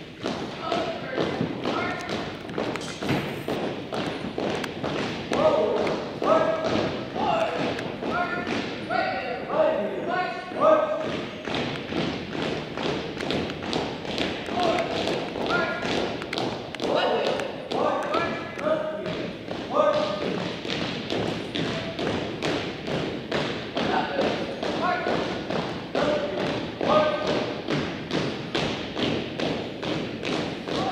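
Color guard cadets marching in step on a hardwood gym floor, their footfalls a steady beat of about two a second, echoing in the hall. Short drill calls are shouted in time with the steps.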